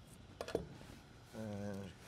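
Quiet kitchen room tone with two light taps about half a second in, then a man's short hummed "mm" near the end.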